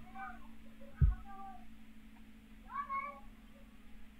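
Faint high-pitched calls that rise and fall in pitch, a few short ones early and a clearer one about three seconds in. A soft thump about a second in, over a steady low hum.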